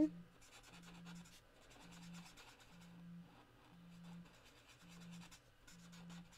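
Broad felt-tip marker scratching and rubbing on cardstock in short strokes as a flower is coloured in.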